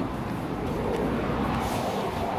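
Steady, even background noise with no distinct event, a little hissier in the second half.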